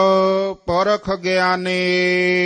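A man chanting a line of Gurbani in a slow, sung melody, drawing out long held vowels over a steady sustained drone note. His voice breaks off briefly about half a second in, then carries on.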